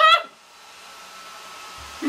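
Breville hair dryer running on its low setting, blowing through the hose of a fabric bonnet attachment: a steady airy hiss with a faint whine, growing slowly louder. A laugh cuts off just at the start.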